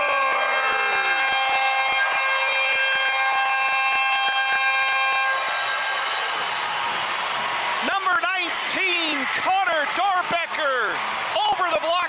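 Arena goal horn sounding one long, steady blast of several held tones after a goal, cutting off about five seconds in. A man's voice follows from about eight seconds in.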